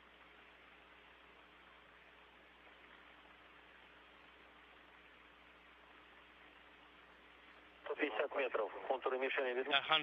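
Faint, steady hiss of an open space-to-ground radio channel with a low hum, and a man's voice coming over the radio near the end calling out the range.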